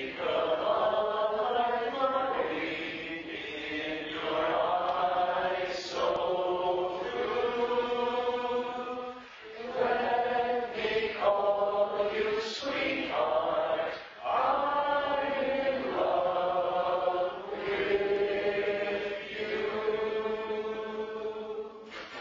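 Male barbershop quartet singing a cappella in close four-part harmony, in held phrases broken by short pauses.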